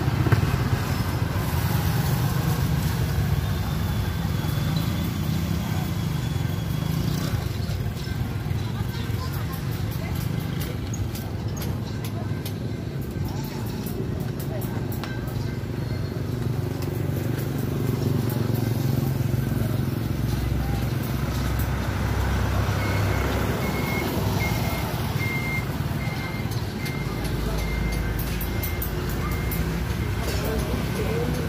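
Roadside traffic: motor vehicles and motorcycles running past, with a steady engine rumble throughout. An evenly repeating high beep comes in for the last several seconds.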